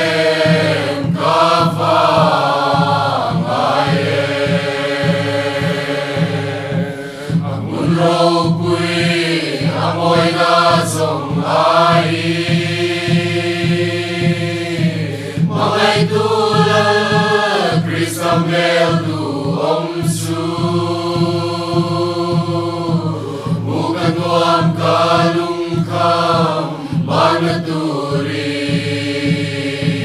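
Mixed choir singing a slow hymn in long held phrases, with a Mizo khuang drum beating steadily underneath.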